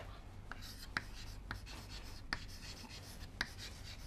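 Chalk writing on a chalkboard: quiet scratching strokes, with several sharp taps as the chalk strikes the board.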